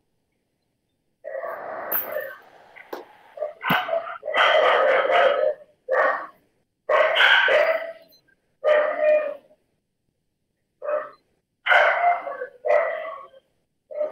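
A dog barking repeatedly in irregular bursts, heard over a video-call audio connection.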